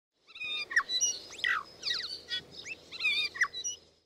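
Birds chirping and whistling: a busy run of quick, varied calls and rising and falling whistles that dies away near the end.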